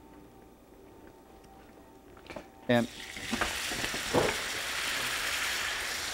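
Vinegar poured into hot bacon fat and sugar in a cast-iron skillet, setting off a loud hiss of sizzling about three seconds in that swells and then holds steady.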